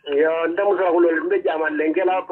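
A person talking through a phone's speaker during a call, the voice thin and cut off at the top like a phone line, with a faint steady hum beneath.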